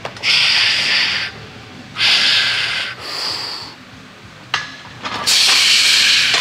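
A weightlifter's forceful breaths, loud and hissing, about four in a row of roughly a second each: he is taking big breaths to brace his trunk under a loaded barbell before descending into a squat.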